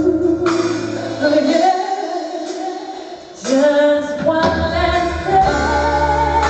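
Female lead vocal singing a pop ballad with a live band in a hall. The bass and drums drop out about two seconds in, leaving the voice nearly alone, then the full band comes back in just past the middle.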